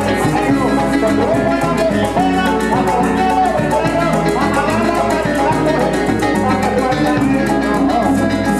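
Llanero folk music played live: plucked strings and a steady bass under a fast, even maraca rhythm.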